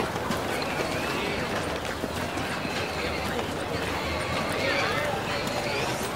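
Street ambience: a horse's hooves clip-clopping among the chatter of passing voices, the talk in Chinese.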